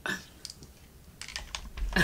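Quick, light clicks and taps of small objects being handled, growing busier toward the end with a low rumble. There is a short breathy vocal sound at the very start.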